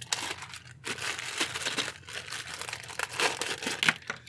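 Clear plastic packaging crinkling and rustling in irregular bursts as it is pulled open and peeled off a wiring harness.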